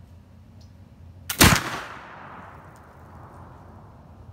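A black-powder flintlock longrifle fires one shot about a second and a half in. A short snap comes just before the main report, and the report's tail dies away over about a second.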